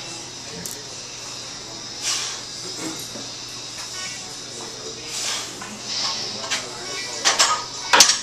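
Gym ambience of background music and indistinct voices, with several short, breathy bursts spaced a few seconds apart as a lifter works through barbell front squat reps. The bursts are loudest in a cluster near the end.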